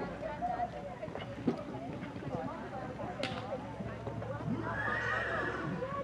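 A horse cantering around a sand show-jumping arena, its hoofbeats soft with a few sharper knocks, and a horse neighing once about five seconds in, over background chatter.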